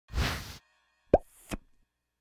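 Intro logo sound effects: a brief rush of noise, then a loud pop that glides quickly upward about a second in, and a softer click half a second after it.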